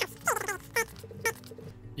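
Plastic-and-metal threads of a screw-on wide-angle/macro lens adapter squeaking as it is twisted onto the 72 mm filter thread of a Sony 18-105mm f/4 zoom lens: a few short squeaks, the first pair falling in pitch.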